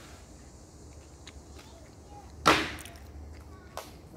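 A wooden slat frame tipped over onto grass lands flat with one loud wooden clap about two and a half seconds in, followed by a smaller knock near the end.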